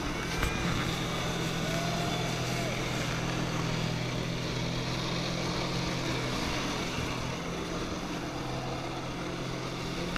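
Jet ski engine running steadily as it pumps water up the hose to a flyboard, a constant drone under the rushing hiss of the water jets.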